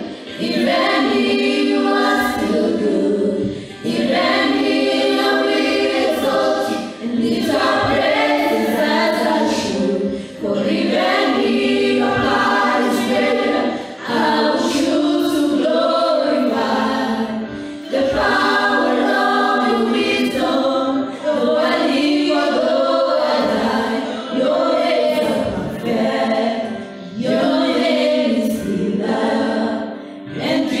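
A small mixed praise team of women's voices and one man's voice sings a gospel worship song together through handheld microphones. The song goes in sung phrases with short breaks every few seconds.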